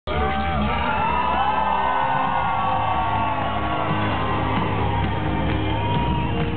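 Loud live music with a steady, heavy bass, with a crowd whooping and cheering over it in a large hall.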